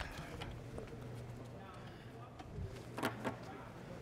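Faint, indistinct voices around a boxing ring between rounds, with a few scattered knocks and clicks; the loudest knock comes about three seconds in.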